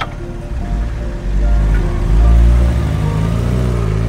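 A sport motorcycle's engine running as it rides off, getting louder about halfway through, with background music over it.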